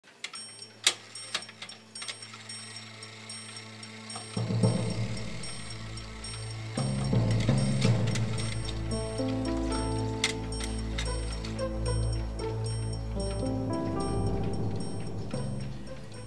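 Brass clockwork clicking and ratcheting in irregular ticks. About four seconds in, music joins it: a low sustained drone, then slow held notes changing pitch, over which the clicks continue.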